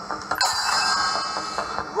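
Instrumental break of an upbeat jingle played by a small live band with bongos and keyboard. A sharp hit comes about half a second in, followed by a held, bright chord under light drum taps.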